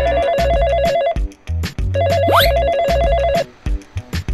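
Smartphone ringing with a fast warbling telephone-bell ringtone, in two rings: the first stops about a second in and the second runs from about two seconds to three and a half. A rising whistle-like glide sounds during the second ring, over background music with a steady beat.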